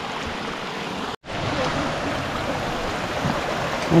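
A small mountain creek running over rocks, giving a steady rush of water. It cuts out abruptly for a moment about a second in, then the same rush carries on.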